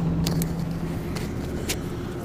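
Tipper lorry's diesel engine idling steadily, heard from inside the cab, with a few faint clicks over it.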